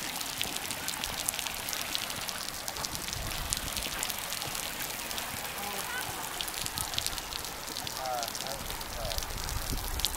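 Outdoor ambience: a steady crackling hiss of many small ticks, with faint distant voices now and then.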